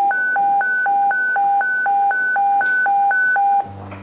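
Two-tone electronic radio alert signal, rapidly alternating low and high beeps, about four a second, the kind that precedes a radio bulletin; it stops abruptly near the end.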